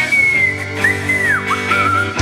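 Live band intro: a single high whistled melody played into a microphone, gliding down and back up and ending in a wavering note, over sustained keyboard chords and bass.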